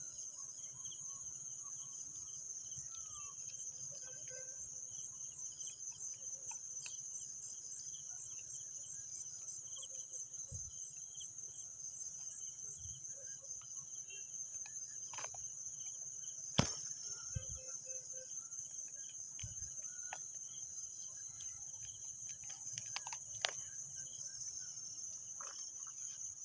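A steady, high-pitched chorus of chirping crickets with a fine, rapid pulse. A sharp knock comes about two-thirds of the way through, and a few fainter clicks follow later.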